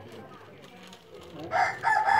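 A rooster crowing loudly, starting about one and a half seconds in, a long call broken into segments.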